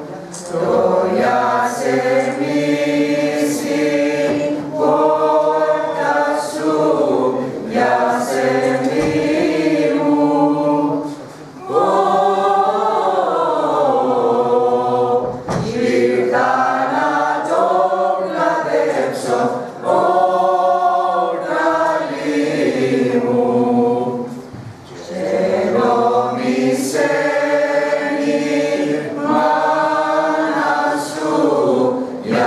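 Small amateur mixed choir of men and women singing a song unaccompanied, in long phrases with two brief breaks for breath, about a third and four-fifths of the way through.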